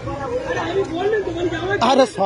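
Several people talking together in chatter.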